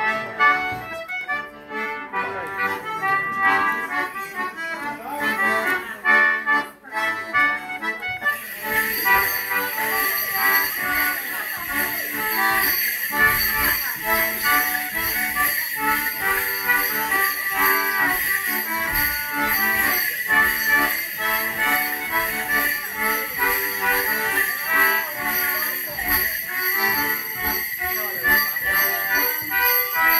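A Morris dance tune played on an accordion. About eight seconds in, the dancers' leg bells join it with continuous jingling, shaking in time as they step and leap.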